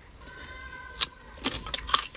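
Crisp clicks and snaps of raw sour green mango slices being picked up and bitten: a few sharp snaps, the loudest about halfway through and more near the end.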